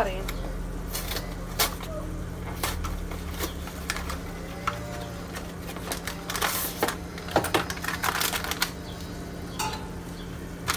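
Scattered light clicks, taps and rustles of cardboard boxes and a packet being handled on a kitchen counter, over a steady low hum.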